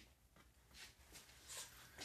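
Near silence: faint room tone with a few faint, soft clicks.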